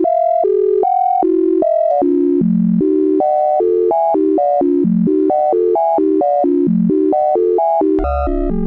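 Instruo CS-L complex oscillator's multiply output played by a sequencer: a stepped run of short electronic notes jumping up and down in pitch. About two seconds in, the pattern quickens to about three or four notes a second, each note thickened by a second tone above it.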